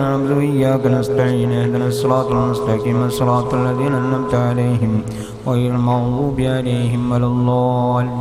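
Islamic devotional chanting: a melodic chanted line over a steady held low note, with a short break about five seconds in.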